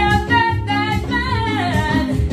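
A woman singing a Pentecostal gospel song, accompanying herself on an electronic keyboard with held chords and bass notes. Her voice holds long notes and slides downward near the end.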